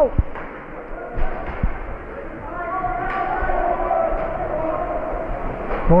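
Ice hockey rink sounds during live play in a large, echoing arena: a couple of short thuds against the boards about a second in, then faint distant voices calling out for a few seconds.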